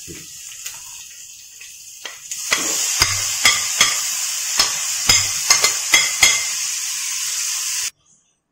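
Onion and green-chilli masala frying in a non-stick pan, the sizzling getting suddenly louder a couple of seconds in as chopped tomatoes are tipped in. A steel spoon repeatedly scrapes and taps against the pan and plate, and the sound cuts off abruptly near the end.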